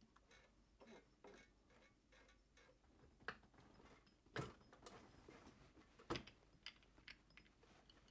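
Faint scattered clicks and small knocks as the stop-motion knob and hand wheel of an Elna Star Series Supermatic sewing machine are handled and turned by hand, with a few louder knocks about three, four and six seconds in.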